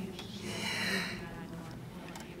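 A person drawing a short breath close to a microphone, a hissy intake starting about half a second in and lasting under a second.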